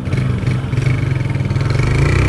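Honda CG 160's single-cylinder four-stroke engine running under throttle as the motorcycle rides through a turn, with a fast even pulsing and the pitch edging up near the end.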